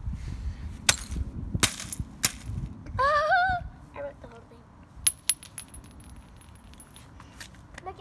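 Claw hammer striking the shards of a marble-stoppered glass soda bottle: three sharp blows a little under a second apart. A sharp glassy click follows a few seconds later, with a thin high ringing and a few lighter clinks.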